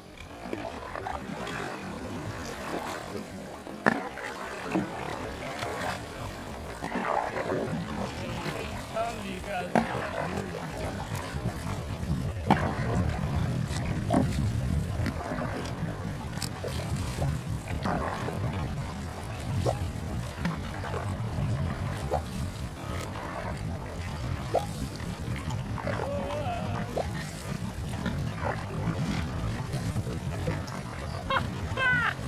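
Small boat's motor running steadily, a rough low rumble that grows louder about six seconds in, with scattered clicks and knocks over it.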